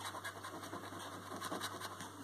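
A coin scratching the silver coating off a paper scratchcard in quick, short strokes.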